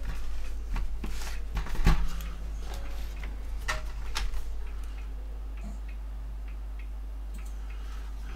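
Scattered plastic clicks and light knocks from a portable DVD boombox being handled, a few sharp ones in the first half and then fainter small ticks, over a steady low hum.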